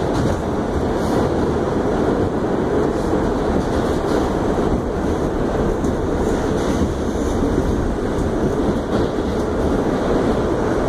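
R68 subway car running at speed through a tunnel, heard from inside the car: a steady, loud rumble of wheels on the rails.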